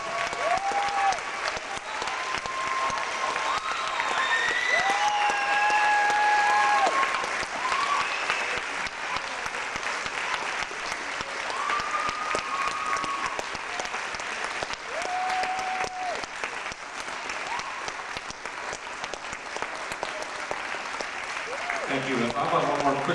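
Audience applauding steadily after a concert, with several long cheers and whoops rising above the clapping.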